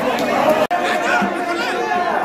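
A crowd of spectators talking and calling out over one another, a dense babble of many voices. The sound drops out for an instant about two-thirds of a second in.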